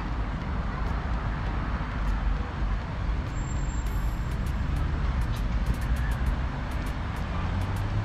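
Steady low outdoor rumble and hiss with faint light ticks throughout, such as wind on the microphone and distant road noise during a walk.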